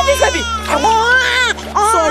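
A child crying and wailing in high-pitched, breaking sobs, over a steady music underscore.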